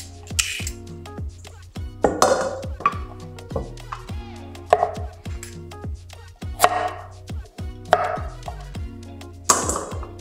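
Background music with a steady beat, over a vegetable peeler scraping down a carrot just after the start and a chef's knife cutting through carrot onto a wooden cutting board later on.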